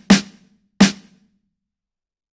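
Sampled snare drum hit triggered from an MPC pad, struck twice about 0.7 s apart and then stopped, each hit with a short tail from a small-room reverb.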